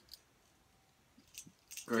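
Mostly quiet room with a few faint clicks and ticks about a second and a half in, from a hard-plastic topwater lure and its treble hooks being turned in the hand. A voice begins near the end.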